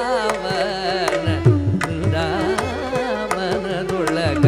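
Carnatic vocal music in raga Kapi: a male voice sings with heavily ornamented, sliding pitch, over a steady tambura drone. Mridangam and ghatam strokes play along, with deep bending drum thuds and sharp slaps.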